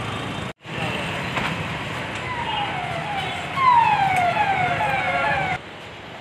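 Police vehicle siren sounding a run of repeated falling sweeps over street noise, starting about two seconds in and cutting off suddenly shortly before the end.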